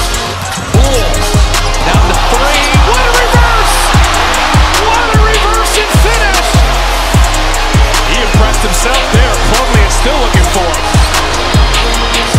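Background music with a deep bass note that slides down in pitch about twice a second.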